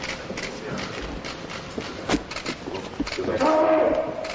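Hard-soled dress shoes of several people walking on a polished marble floor, making irregular sharp clicks. A man's voice speaks briefly near the end, louder than the steps.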